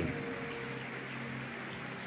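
Faint, steady background hiss of a large hall during a pause in speech, with a few quiet low tones held underneath.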